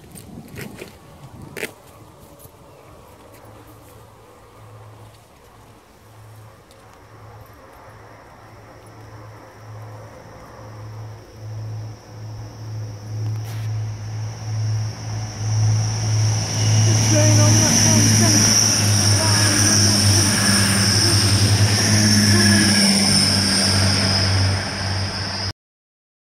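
An approaching train's engine throb, growing steadily louder, joined about halfway through by a high-pitched whine from the wheels and rails; the sound cuts off abruptly just before the end.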